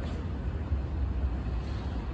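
Steady low rumble of station background noise, with no distinct event standing out.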